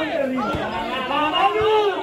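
Spectators chattering close to the microphone, several voices overlapping with no clear words.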